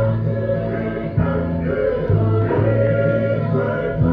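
A group of voices singing together over held low notes, from a Māori stage performance played back through a television's speakers. The low notes break off briefly about a second in and again about two seconds in.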